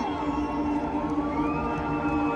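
Electronic music from a festival sound system: held synth tones and a smooth tone that glides up about one and a half seconds in, over crowd noise.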